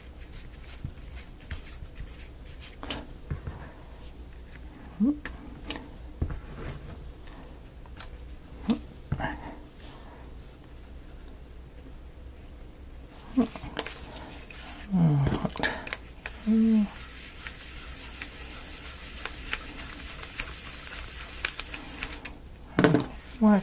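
Light clicks and taps of laser-cut plywood model parts as a wheel and its hub pin are pressed onto the axle of a wooden model cannon, with a few short wordless hums or murmurs in between. A steady hiss comes up in the last few seconds.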